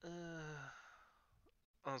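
A person's drawn-out hesitant "uh", falling in pitch and trailing off like a sigh.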